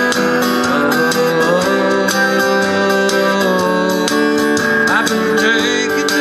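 Acoustic guitar strummed through a steady chord progression in an instrumental break of a country song, with regular percussion hits keeping time. A few short bent notes come near the end.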